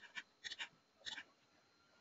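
Near silence, broken by a few faint short clicks.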